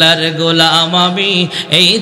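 A man's voice chanting a sermon verse in a sung melodic line through a microphone and loudspeakers, holding one steady note for about a second and a half before a brief break. This is the melodic chanting style of a Bangla waz.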